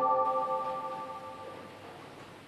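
A single bell-like chime, several tones sounding together, struck once and fading away over about two seconds. It is a broadcast sound effect.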